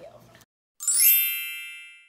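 Chime sound effect from the edit: one bright, ringing ding starts suddenly just under a second in and fades away over about a second. It follows a sudden cut to dead silence.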